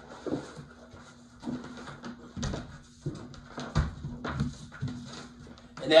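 A foam yoga mat being smoothed out on a wooden floor, then a person sitting down and shifting onto it: scattered soft thumps and rustles, with a faint steady hum underneath.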